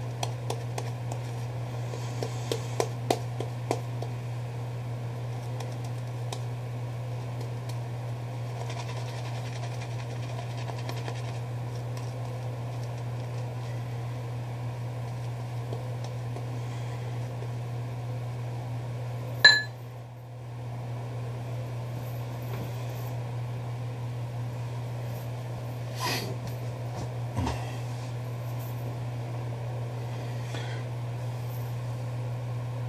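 A shaving brush faintly working lather onto the neck under a steady low hum. There are a few light clicks in the first few seconds and one sharp knock about twenty seconds in.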